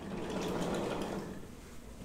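Sliding blackboard panel being moved along its track: a rumble of about a second and a half that swells and fades.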